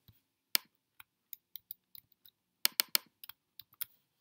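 Computer keyboard keystrokes and mouse clicks while text is entered in a document: a few sharp clicks spread out, with a quick run of three or four a little past halfway.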